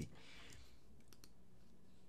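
A few faint, quick computer clicks a little past the middle, over quiet room tone.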